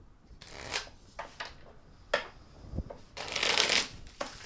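A tarot deck being shuffled by hand: soft rustling with a few sharp card snaps, then a longer, louder burst of shuffling near the end.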